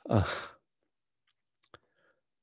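A man's hesitant, sigh-like 'uh', falling in pitch and lasting about half a second, followed by quiet with a faint click near the end.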